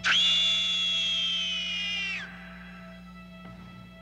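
A woman's scream, swooping up sharply and held high for about two seconds before breaking off with a falling pitch, over a low, steady suspense-music drone that continues alone afterwards.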